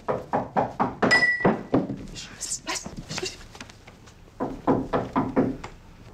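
Repeated knocking on a door in two runs, the first over the opening two seconds and the second near the end, with a short high beep about a second in.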